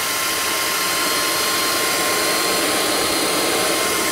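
Tefal Air Force 360 Light Aqua cordless stick vacuum running with suction and its rotating wet-mop head working together over a hard floor: a steady motor whine that holds level throughout.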